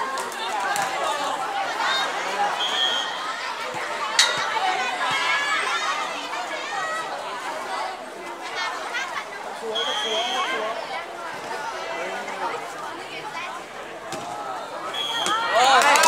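Many spectators' voices chattering and calling out at once around an outdoor volleyball court. There is one sharp click about four seconds in and a few brief high-pitched tones.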